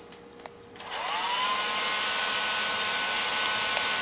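An electric blower switches on about a second in. Its motor whine rises in pitch and settles into a steady whine over a rush of air, the wind that turns the wind car's propeller.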